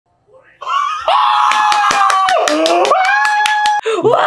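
A person's long, loud held scream, steady at first, dipping in pitch midway and rising again, over a rapid run of sharp smacks or claps.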